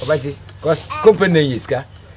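A man speaking in conversation.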